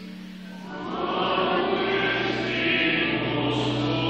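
Church choir singing with many voices together, coming in after a brief lull about a second in, with a steady low note held underneath.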